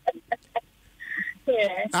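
A caller's audio over a telephone line: a few short clicks, a brief high-pitched sound about a second in, then a woman's voice starting to speak, all thin and cut off in the highs.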